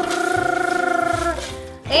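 A vocal drum roll: one person's voice holding a rolled "drrrr" on a steady pitch with a fast flutter, stopping near the end.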